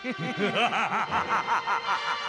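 A man laughing in a quick run of repeated 'ha' pulses, about four a second. Background music comes in near the end.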